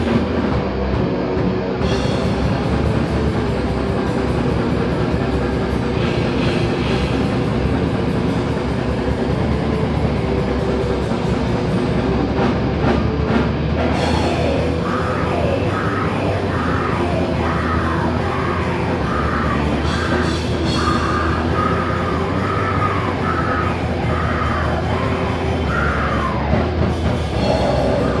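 Heavy metal band playing live: distorted electric guitar over a drum kit, loud and dense throughout, with a higher wavering part joining just past halfway.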